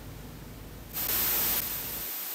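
Static hiss that switches on suddenly about a second in, loud at first and then a little quieter, as the live remote audio link opens.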